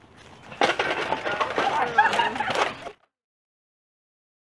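A group of people yelling and scrambling through leafy undergrowth, with crackling and rustling of trampled plants. The sound cuts off abruptly about three seconds in.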